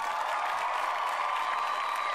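Canned applause sound effect: a steady wash of clapping and crowd noise with a faint held tone in it, played as the next presenter is brought on.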